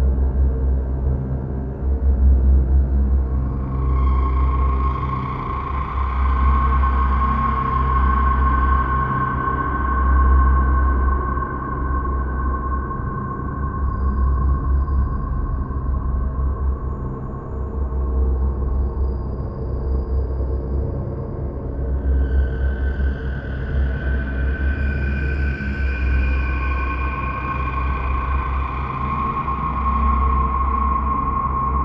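Dark ambient background music: a low, pulsing drone with long held high tones that swell in, fade away through the middle and come back near the end.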